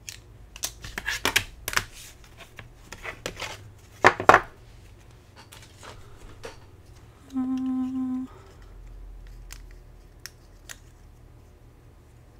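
Clicks and clatter of a magnetic die-cutting mat and plates being handled and stacked. Then a single pitched electronic beep of about a second, followed by a faint low hum as an electric die-cutting machine runs the mat through to cut the wafer dies.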